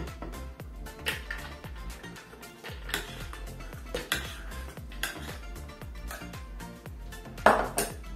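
Background music with a steady beat, over a metal spoon knocking against a bowl and a plastic blender jar as ice cream is scooped in: a few separate clinks, the loudest near the end.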